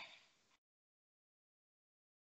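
Near silence: the tail of a voice fades out about half a second in, and the audio stays dead quiet after that.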